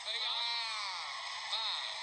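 A single drawn-out vocal call, one long sound that rises and then falls in pitch over more than a second, over the fight commentary.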